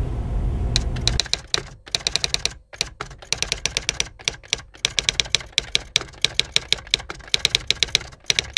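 Fast typing on a computer keyboard: keys clicking in quick, irregular runs with short pauses, starting about a second in.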